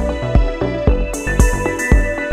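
Electronic intro-style music with a steady beat of about two beats a second over held synth tones. It has a run of three short, bright, hissing swells in the second half.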